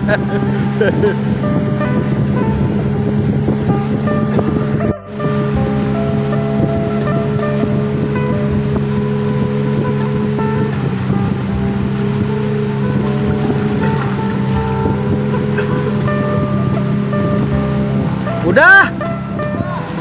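Outboard motor of a river longboat running steadily under way, with music playing over it. Near the end a short sound swoops up and down in pitch.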